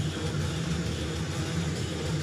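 Entrance music playing over the arena PA, blended with a steady crowd din that fills the hall, with no break.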